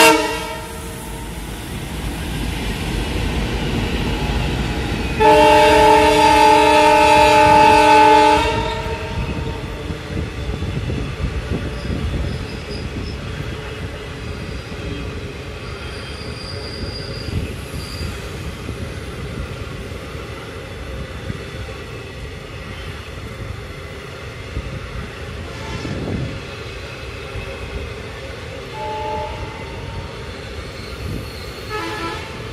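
Twin WDM-3D ALCO diesel locomotives pass at speed, their engines running, and sound a multi-tone air horn about five seconds in; the blast lasts about three seconds. After that the long rake of coaches rolls by with a steady rumble of wheels on the track.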